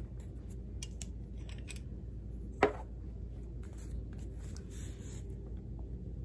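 Small handling clicks and paper rustles from a fountain pen and planner pages being handled, with one sharp, louder click about two and a half seconds in, over a steady low room hum.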